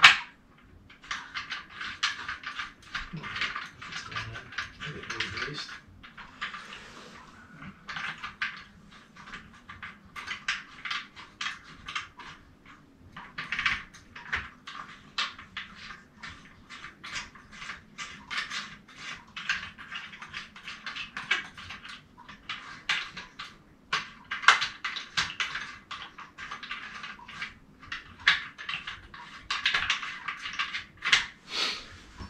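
Rapid, irregular small metallic clicks and scrapes of bolts being threaded and turned into a paramotor's propeller hub, with a couple of short pauses.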